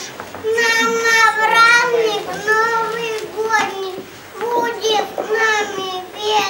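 A young child's high voice reciting in a drawn-out, sing-song way, with short pauses between phrases.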